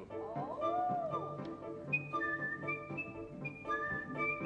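Opera orchestra playing, with a gliding line early on and then a high, thin melody of held notes stepping upward over the lower parts.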